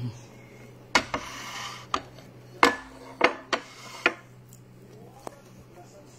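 A bowl knocking and clinking against a stone countertop, about seven sharp knocks spread over a few seconds, the loudest a little past halfway.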